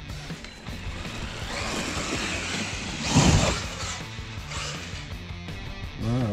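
Background music playing throughout, with a rushing noise that swells from about a second and a half in and peaks loudly a little past halfway before fading.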